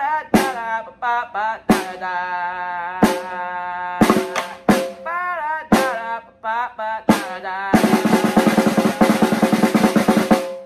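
Snare drum played with sticks: single sharp hits spaced roughly a second apart, with a voice singing along between them, then a loud, fast roll from near eight seconds in that stops just after the end.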